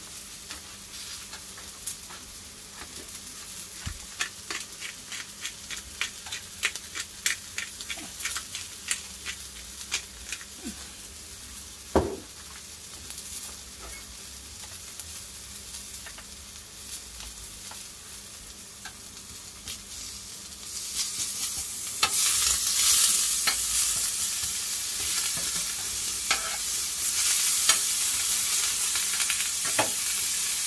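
Beef steak and asparagus sizzling on a hot flat-top griddle, with quick spitting crackles and a single knock about twelve seconds in. About two-thirds of the way through, the sizzle grows much louder as butter melts onto the asparagus.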